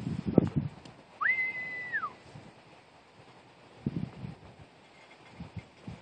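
A falconer's recall whistle blown once, about a second in: it slides up, holds one steady high pitch for under a second, then drops away, calling the hawk back to the glove.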